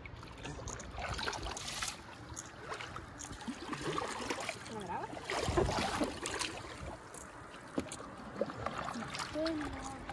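A paddle dipping and pulling through sea water beside a stand-up paddleboard, with small splashes and water lapping at the board. A faint voice comes in near the end.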